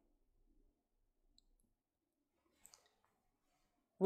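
Near silence: room tone, with a few faint ticks about a third of the way in and again past the middle.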